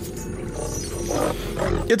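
Anime soundtrack: tense background music over a steady low rumble, with the growl of a large monster approaching.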